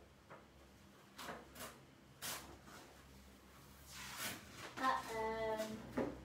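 A few short rustling handling noises, like paper being moved about. About five seconds in comes a brief wordless vocal note, held for under a second.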